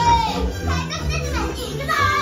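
Children's voices on a ride's show soundtrack, cheering and whooping in rising and falling shouts over orchestral background music.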